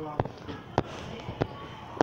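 A series of short, sharp knocks, four of them about half a second apart.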